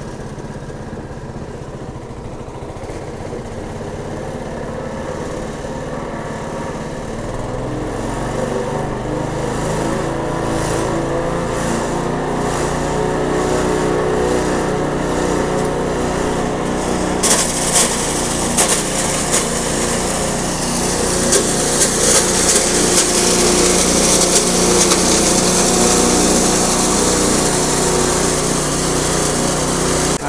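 Small engine driving a multifunction chopper used as a hammer mill, speeding up over the first several seconds. About seventeen seconds in, dry corn cobs go into the mill and a loud, rough grinding with sharp rattles comes in over the engine as the cobs are crushed into meal through an 8 mm screen.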